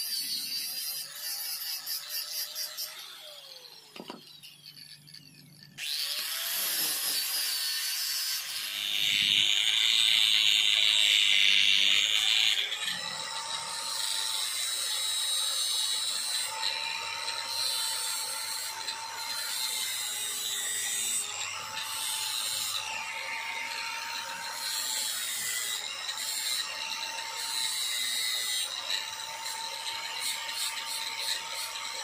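Handheld electric angle grinder with an abrasive sanding disc grinding down a piece of wood. It drops away briefly about four seconds in and starts again around six seconds, is loudest for a few seconds around ten seconds in, then runs on more steadily with a whine that comes and goes as the disc is pressed against the wood.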